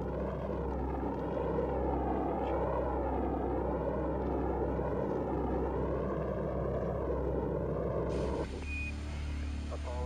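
Saturn V rocket launch roar at liftoff: a dense rushing roar from the first-stage engines, its tone sweeping slowly up and down throughout. It cuts off suddenly about eight and a half seconds in, leaving a quieter hiss over a low hum.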